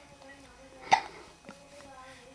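A baby's single short hiccup about a second in.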